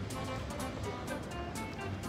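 Background music with a regular beat.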